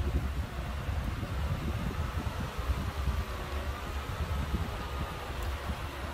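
A 12-inch shutter exhaust fan running, a steady rush of air with a low rumble, and a faint whine that wavers in pitch midway through.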